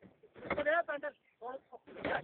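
A person's voice: two short vocal outbursts without clear words, the first about half a second in and the second just before the end.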